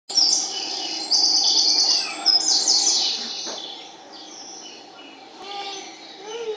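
Recorded birdsong played over a theatre sound system as a stage effect: rapid high chirps and trills, loudest in the first three seconds, then fading away.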